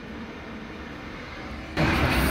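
Steady rumble of an airliner flying overhead. Near the end a much louder, hissy noise starts suddenly.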